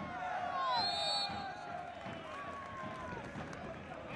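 Several voices shouting at once as a sliding tackle brings play to a stop, with long drawn-out calls in the first couple of seconds over the open-air noise of the ground.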